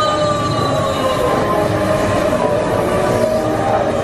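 Peter Pan's Flight ride vehicle running along its overhead rail: a steady rumble with drawn-out squealing tones, one sliding slowly down in pitch.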